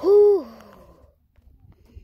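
A young boy's short, voiced 'oooh' through rounded lips, held on one pitch for about half a second and then dropping off: a weary sigh from the effort of a hard walk.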